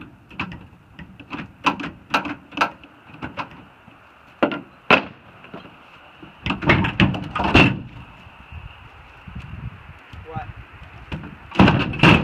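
Pickup truck tailgate handle and latch clicking and rattling as the handle is yanked again and again without the tailgate opening at first. A dense burst of loud clatters comes in the middle. Near the end comes the loudest clatter as the steel tailgate drops open.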